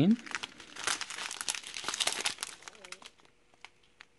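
Small plastic zip-lock bags of diamond painting drills crinkling as they are handled and shuffled. The dense crinkling lasts about three seconds, then stops.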